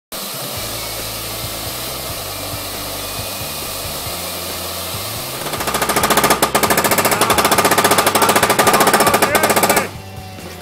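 A firework fountain hissing and crackling. About halfway through, a loud, fast, evenly spaced hammering rattle takes over and cuts off abruptly just before the end.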